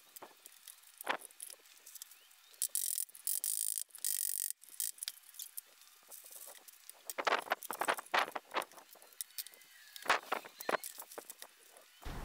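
Quiet workshop handling sounds: one-handed bar clamps clicking as they are tightened, wax paper rustling over the glued-up boards, and light knocks of wood and clamps being set down.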